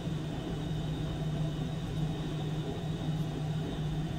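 Steady low hum with a faint higher hiss from the running ultrasonic oscillation test rig, unchanging throughout.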